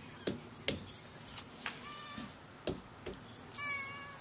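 A cat mewing twice, short high calls about a second and a half in and near the end, with a few light knocks in between.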